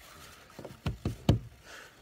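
A few sharp knocks in quick succession, about four within the second half-second to second and a quarter, the last one the loudest.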